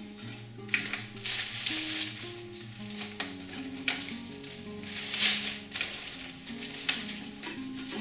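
Background music of steady held notes, with several short bursts of crisp rustling as leafy stems are handled and pushed into a glass vase; the loudest rustle comes a little past the middle.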